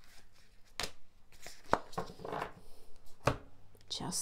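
Tarot cards being drawn from the deck and laid out on a wooden table: a few sharp taps about a second apart, with a soft sliding rustle between them.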